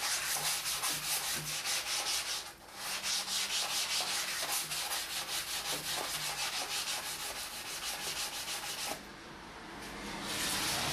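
Sandpaper being rubbed by hand over the varnished wooden apron of a table in rapid back-and-forth strokes. There is a brief pause about two and a half seconds in, and the strokes stop about a second before the end.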